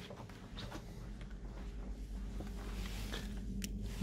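Quiet room tone: a low steady hum, growing slightly louder, with a few faint taps and clicks, like a handheld camera being moved about.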